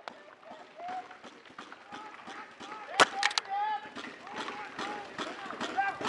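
Paintball markers popping across the field, with a quick burst of about four sharp shots about three seconds in, amid distant players shouting calls to each other.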